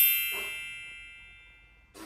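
A single bright, bell-like ding with many high ringing tones. It is loudest right at the start and fades away evenly over about two seconds.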